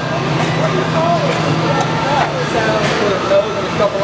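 Several people talking at once in the background, words indistinct, over a steady low hum that stops about three seconds in.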